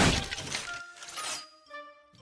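A sudden loud smashing crash, a sound effect of something shattering, that dies away over about a second and a half. Background music plays under it.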